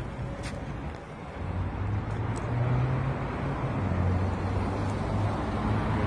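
Road traffic: a motor vehicle's low engine hum swells about a second and a half in and holds steady over general street noise.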